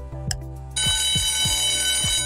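An alarm-clock ringing sound effect starts about three quarters of a second in, signalling that the quiz countdown has run out. It plays over background music with a ticking beat about twice a second.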